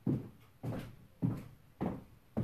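Seven-inch high heels stepping on a squeaky hardwood floor: four even footsteps a little over half a second apart. Each step lands as a short knock that fades quickly.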